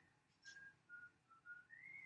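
Faint human whistling: a few short pure notes stepping down in pitch, then one note gliding up near the end.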